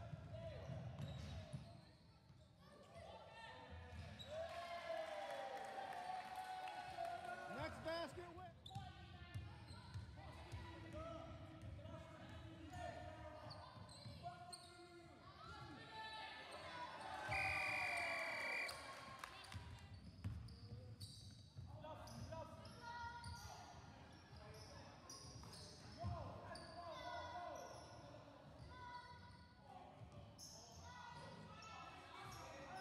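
Basketballs bouncing on a wooden sports-hall floor amid players' shouts and chatter, echoing in the large hall. About 17 seconds in, a steady high-pitched tone sounds for about a second and a half and is the loudest thing heard.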